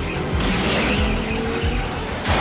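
Tyres squealing as a vehicle skids, over a film score with a steady low beat.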